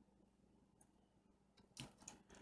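Near silence: quiet room tone with a faint hum, broken by one short click near the end.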